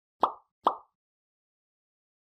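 Two short pop sound effects about half a second apart, near the start, marking like, comment and share icons popping up in an end-screen animation.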